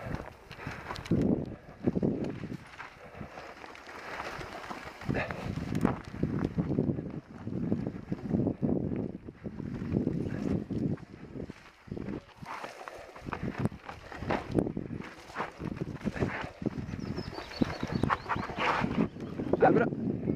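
Mountain bike rolling down a rocky trail: tyres crunching and the bike rattling, with irregular knocks as it goes over stones.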